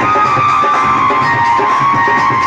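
Live Indian folk music played loudly for a stage dance: a held melodic line over a steady drum rhythm.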